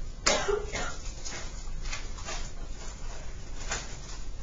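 A person coughing once, sharply, about a quarter-second in, followed by several fainter short sounds over a steady low room hum.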